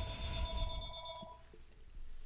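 A ringing, bell-like tone made of several steady pitches sounding together, which stops about a second and a half in.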